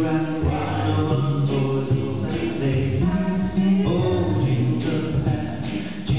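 Male a cappella quintet singing close-harmony chords into microphones, with no instruments, over a low bass voice. The chords are held and change every second or so.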